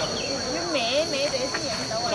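A steady, high-pitched drone of insects, with a person's voice rising and falling in pitch beneath it.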